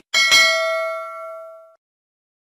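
Notification-bell 'ding' sound effect: a bright bell struck twice in quick succession, ringing out for about a second and a half before cutting off abruptly.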